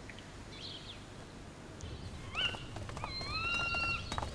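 A few faint bird chirps, then from about halfway the low shuffle of a crowd walking. Near the end comes a long whistling call that rises and then holds its pitch.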